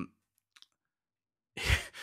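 A pause between words: near silence broken by a couple of faint clicks, then an audible breath taken just before a man speaks again.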